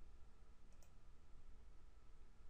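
Near silence with faint room hum, broken by a single faint computer-mouse click a little under a second in.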